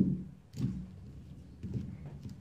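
Soft low knocks and handling noise from ears of dried corn being moved about on a cloth-covered table, loudest right at the start, then a few fainter knocks.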